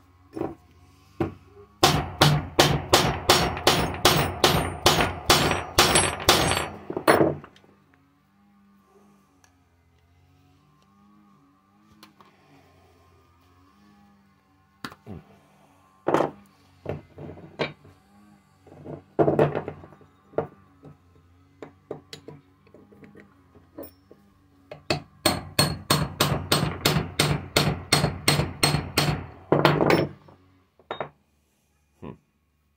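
Steel hammer striking a metal punch held against a small electric motor's laminated stator core to drive out its copper winding: a fast run of about four blows a second lasting some five seconds, a few scattered single knocks, then another fast run near the end.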